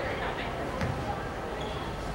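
Basketball bounced on a hardwood court a couple of times in the first second, a free-throw shooter's dribbles at the line, over the murmur of the gym crowd.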